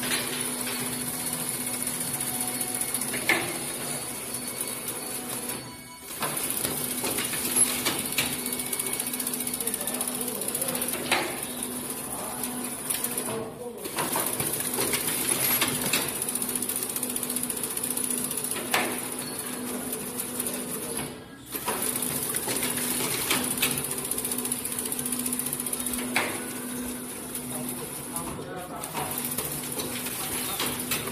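An automatic coffee stirrer stick bundling machine running: a steady mechanical hum with a constant high whine, and irregular sharp clicks and knocks from its pneumatic cylinders and feed mechanism. The sound cuts out briefly three or four times.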